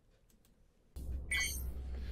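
Near silence, then about a second in a low synthesized hum starts, with a short run of high electronic bleeps: computer-style intro sound effects.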